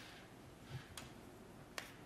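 Near-silent room tone with two faint sharp clicks, one about a second in and one near the end.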